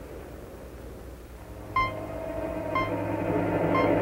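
Three short electronic beeps about a second apart, over a low steady drone that grows louder.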